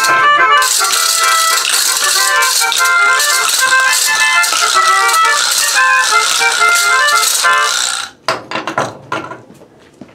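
A melodica playing a quick tune of short notes, with hand rattles shaken along throughout. The playing stops suddenly about eight seconds in, followed by a few knocks.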